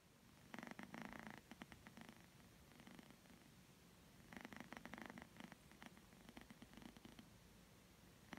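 Domestic cat purring softly while dozing, the purr swelling twice, about four seconds apart.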